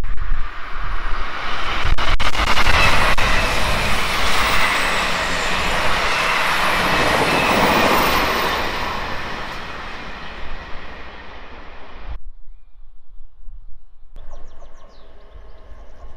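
Multi-car passenger train running past the platform: a loud, steady rush and rumble with a few sharp clicks about two to three seconds in, easing off after about eight seconds. The sound cuts off suddenly about twelve seconds in, and a quieter background returns two seconds later.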